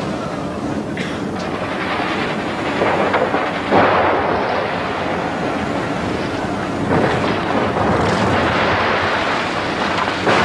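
A double-decker bus crashing over a cliff edge and tumbling down a rocky slope: a continuous crashing rumble with heavier impacts, the loudest about four seconds in and more near seven and eight seconds.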